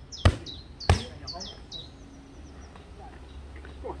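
Boxing gloves punching leather focus mitts: two sharp smacks in the first second, then a pause. A small bird chirps over and over in quick falling notes during the first two seconds.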